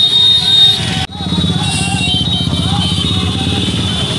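A procession of motorcycles riding past with many small engines running together, mixed with people's voices shouting. The sound drops out abruptly for a moment about a second in, then carries on.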